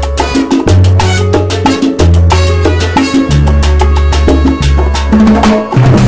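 A salsa band playing, with bongos struck in quick rhythmic strokes over a low bass line that changes note about once a second.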